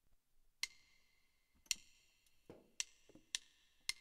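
Count-in clicks of a jazz play-along backing track: sharp wooden clicks, two about a second apart, then three at double speed.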